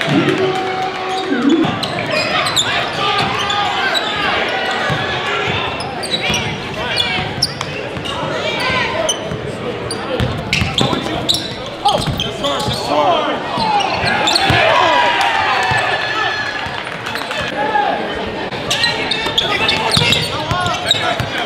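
Live game sound of a basketball being dribbled on a hardwood gym court, with short high sneaker squeaks, amid the talk and shouts of players and spectators in a large echoing gym.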